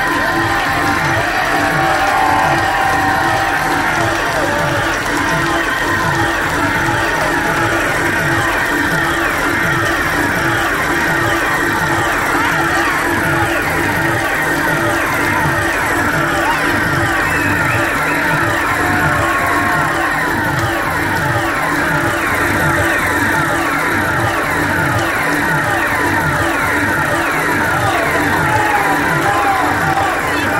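Live electronic music played over a venue PA and heard from within the audience: a steady pulsing beat under many repeated falling synthesizer sweeps and a held low drone.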